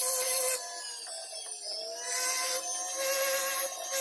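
Flexible-shaft rotary tool whining as its burr carves into a silver ring, with patches of scratchy cutting noise. The whine dips in pitch and recovers about halfway through.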